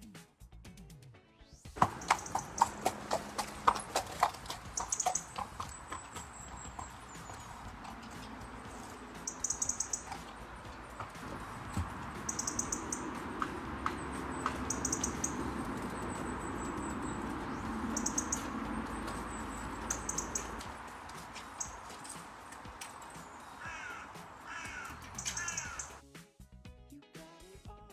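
Outdoor paddock sound: a quick run of sharp knocks of a horse's hooves on a wooden cable-reel spool about two seconds in, then a steady rustling background with scattered knocks, and a few crow caws near the end.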